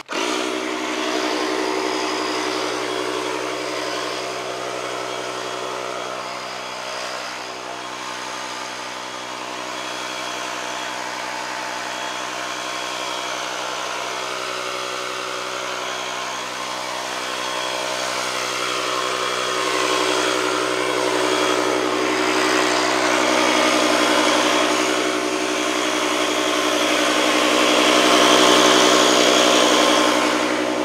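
Ryobi 18V One+ battery fogger running steadily: a loud, even motor whine with a rush of air as it turns liquid mosquito killer into fog. It grows somewhat louder over the last third.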